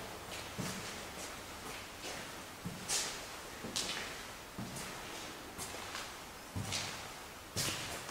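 Slow footsteps on a hard floor, short knocks about once a second.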